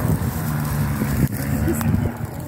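Low, muffled voices of people talking, over a steady low rumble.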